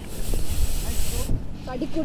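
A steady hiss that cuts off suddenly just over a second in, over low thumps.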